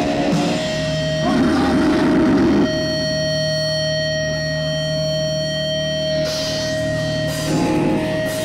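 Distorted electric guitars through stage amplifiers, played live between songs. A single held tone rings throughout, with rough strumming about a second in. A long sustained chord follows and cuts off about six seconds in, before the band starts the next song.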